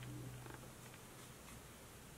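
Near silence: faint room tone, with a low steady hum that fades out about a second and a half in.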